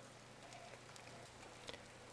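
Faint, steady sizzle of two eggs frying in butter in a heavy nonstick pan, with a small tick near the end.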